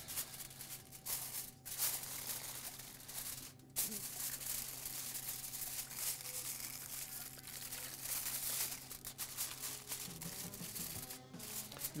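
Aluminium foil crinkling and rustling as it is pressed down over a fish to cover the baking dish, with a few sharper crackles.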